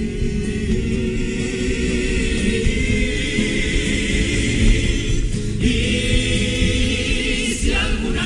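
Male comparsa chorus singing together with Spanish guitar accompaniment; the sung notes shift about five and a half seconds in.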